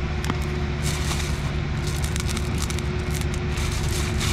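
A steady low engine drone runs throughout, the loudest sound, with scattered light clicks and crackly rustles of flat glass beads being handled in a plastic bag and dropped onto wet concrete.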